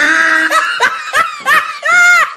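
A person laughing loudly, a held opening burst followed by several short bursts that rise and fall in pitch, the last the loudest.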